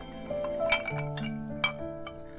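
Two sharp clinks of dishes knocking together in a wash basin, about a second apart, over soft background music with slow held notes.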